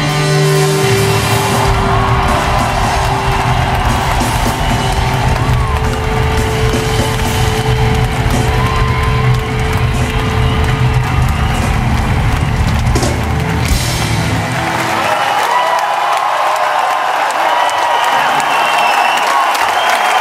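Live rock band playing the closing bars of a song, held notes over heavy bass and drums, with the crowd whooping. About three quarters of the way through the bass drops out as the song ends, leaving the audience cheering and whooping over the last ringing sounds.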